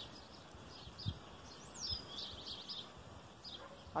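Small birds chirping, one call sliding down in pitch a little under two seconds in, followed by a quick run of chirps. Two soft low thuds, about a second in and again near the two-second mark.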